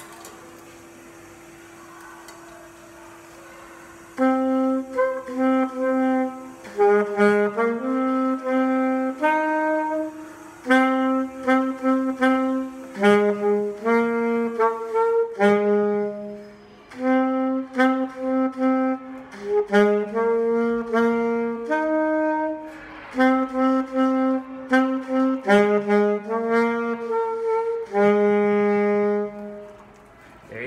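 Saxophone playing a slow, simple melody on a few notes in its lower-middle register, starting about four seconds in and ending on a longer held note near the end. A faint steady tone is heard beforehand.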